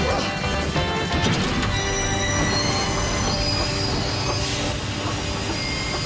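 Cartoon steam train's wheels squealing on the rails as it brakes to a stop, over background music.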